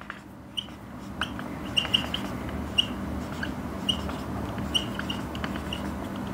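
Dry-erase marker squeaking on a whiteboard in a string of short, high chirps with light taps of the tip as words are written, over a faint steady hum.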